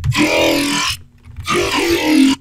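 Serum synthesizer dubstep growl bass patch played as two notes of about a second each, the first cutting off sharply with no trailing echo, because the amplitude envelope is modulating the delay to remove its extra release tail.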